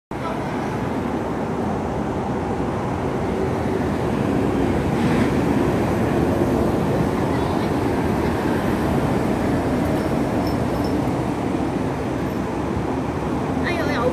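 Expressway traffic: a steady rush of tyre and engine noise from lorries and a double-decker bus passing, swelling slightly in the middle as vehicles go by.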